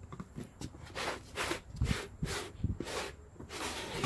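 A hard plastic carrying case being pulled out of a cardboard box: a string of short scraping and rustling sounds of plastic against cardboard.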